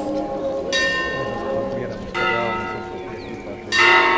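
Church bell tolling a funeral knell: three strokes about one and a half seconds apart, each left to ring on and fade, over the hum of the earlier strokes.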